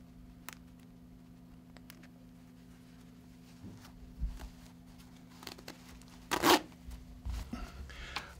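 A zipper slider being started onto plastic zipper teeth, with a few faint clicks and rustles, then one quick zip about six seconds in as the slider is pulled along the zipper.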